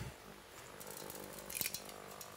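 Peppercorns dropping into a stainless-steel saucepan: a quick run of faint small clicks about a second in, over a low steady kitchen background.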